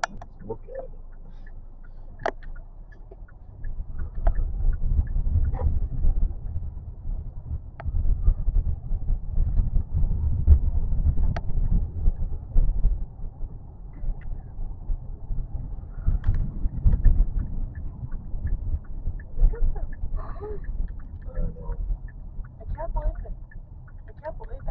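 A low, uneven rumble that swells and fades in gusts, with a few sharp clicks and faint voices near the end.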